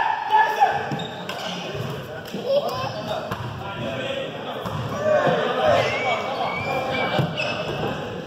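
Voices talking and calling out in a large, echoing gym hall, with scattered knocks and thuds on the hardwood floor.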